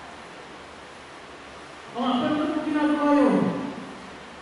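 A man's voice over a microphone and PA in a large reverberant hall: after about two seconds of room tone, a single drawn-out vowel, held steady and then falling sharply in pitch before it breaks off.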